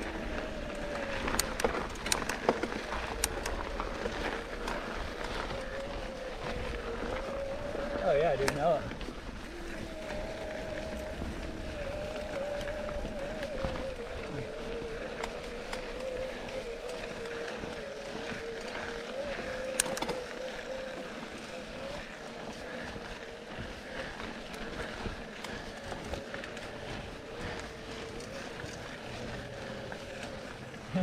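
Electric bike drive motor whining steadily on a dirt-trail climb, its pitch wavering slightly with speed, over tyre noise on dirt and occasional sharp clicks from the bikes.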